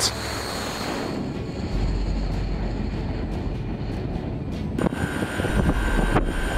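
Rocket motor of a missile launching from a warship's vertical launch system: a steady rushing roar, brightest in the first second, then duller. About five seconds in it gives way to a different steady noise with a faint thin whine.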